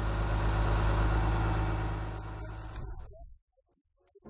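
Diesel engine of an oil palm fruit collection truck running steadily while a bunch of fresh fruit is lifted into its tray. It fades out about three seconds in, leaving a short silence at the end.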